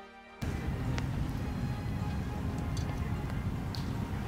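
Background music cuts off about half a second in. It gives way to a small fire in a stainless-bowl fire pit crackling over a low rumble, with a few sharp pops.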